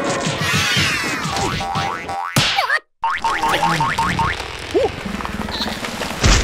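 Cartoon soundtrack of wordless, comic character vocalizations with springy boing sound effects over music. The sound drops out for a moment near the middle, then a fast run of ticking noises follows.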